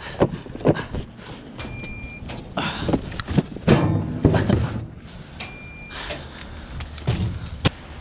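Amazon Locker kiosk beeping twice, about four seconds apart, amid knocks and clunks of its metal compartment doors and a package being pushed in.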